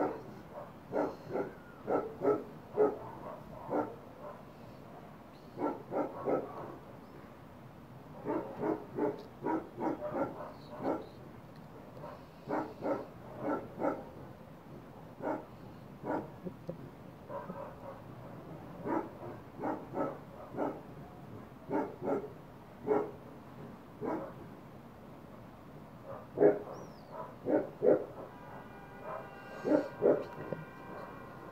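A dog barking over and over, in runs of several quick barks with short pauses between the runs.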